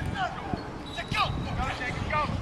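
Football players and coaches shouting on a practice field, with a few dull thuds among the shouts.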